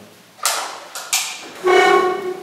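Three short musical tones, each starting sharply and fading, the last one the loudest and held longest.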